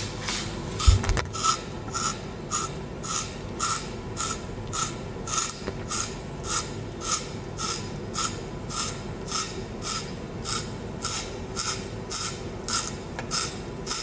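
Stainless steel hand-held spiral slicer cutting a carrot as it is twisted through the blade, a rhythmic rasping scrape about three times a second. There is a single low thump about a second in.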